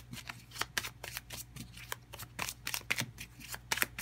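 Tarot cards being shuffled by hand: a string of quick, uneven card slaps and flicks, a few per second.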